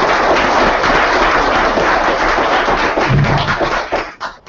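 Audience applauding, dense clapping throughout that dies away at the very end into a few last claps.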